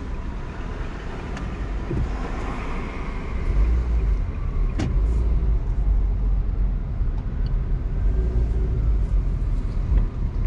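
Car driving through city traffic: a steady low road rumble that grows louder about three and a half seconds in, with a single sharp click near the middle.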